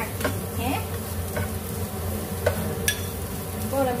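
Spatula stirring diced vegetables and sausage sizzling in a frying pan over a high gas flame, with a few sharp clicks of the spatula against the pan. A steady low hum runs underneath.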